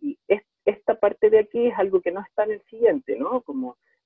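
Speech only: a man lecturing in Spanish over an online video call, talking without pause.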